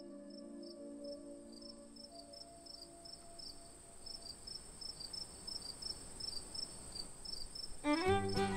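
Crickets chirping steadily, about three short high chirps a second, under a soft ambient music chord that fades away over the first few seconds. A new, louder music track starts right at the end.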